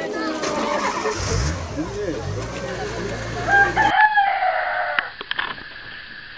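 A rooster crowing once, a single drawn-out call about three and a half seconds in, over the chatter of a crowd and a running engine.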